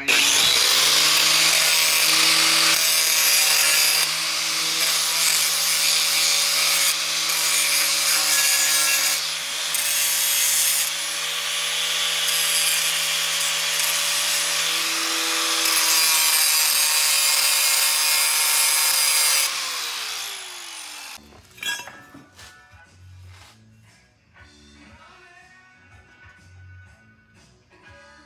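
DeWalt angle grinder grinding the cut end of a steel beam: a loud, steady motor whine with a harsh grinding rasp for about twenty seconds. Then it is switched off and winds down, followed by a few quieter clicks of handling.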